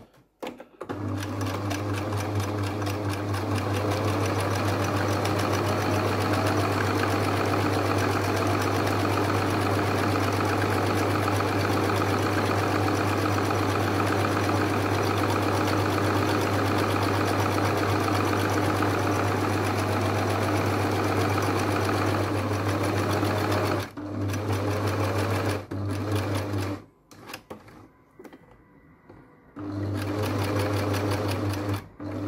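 Domestic electric sewing machine stitching at a steady speed, its needle chattering fast over the motor hum. It stops briefly twice near the end and is then quiet for the last few seconds before starting again.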